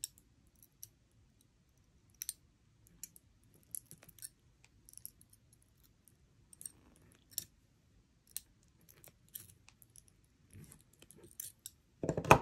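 Faint, irregular small clicks and ticks of steel jewellery pliers gripping and turning 22-gauge wire as it is wrapped around the stem of a loop, with beads and shells on the strand lightly knocking together.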